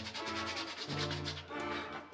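Sandpaper rubbing by hand over a carved wooden figure in quick back-and-forth strokes, under soft background music with sustained notes.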